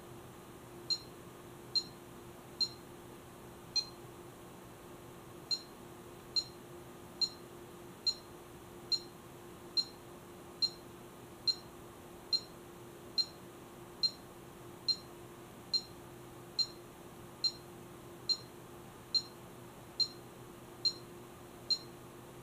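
Bully Dog GT handheld tuner beeping at each button press: a string of short, high, identical beeps about once a second as the gauge selection is scrolled through.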